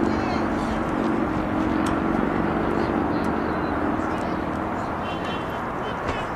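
Outdoor ambience at a youth baseball field: a low, steady engine drone that fades away about five seconds in, over indistinct voices of spectators and players.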